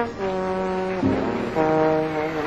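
Live jazz: a saxophone holds long notes, two sustained tones of about a second each, over the band.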